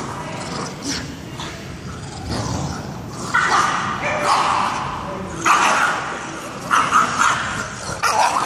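Staffordshire Bull Terriers playing tug, with a run of short yips and barks in the second half, several separate bursts.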